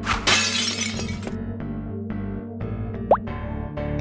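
Cartoon background music with sound effects: a crashing, shattering noise lasting about a second near the start, and a short rising whistle about three seconds in.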